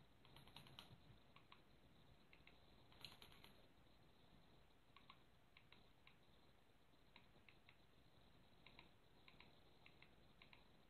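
Near silence: room tone with a few faint scattered small clicks, a little cluster of them about three seconds in.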